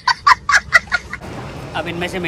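A young boy laughing hard in rapid, high-pitched bursts of about five or six a second, breaking off about a second in.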